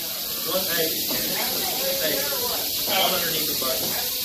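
Rattlesnakes rattling: a steady, dry, hissing buzz, with a crowd's voices murmuring underneath.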